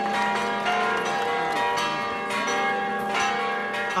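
Orthodox church bells pealing: several bells struck again and again in an irregular pattern, their tones ringing on and overlapping.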